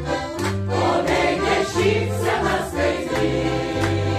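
Mixed choir of men and women singing, accompanied by a piano accordion whose bass notes keep a regular rhythm underneath.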